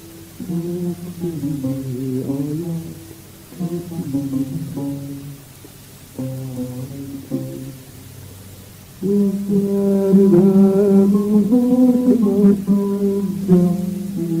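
A man singing a slow song in phrases with gliding, ornamented pitch and short pauses between them. About nine seconds in the music becomes louder and fuller, with long held notes.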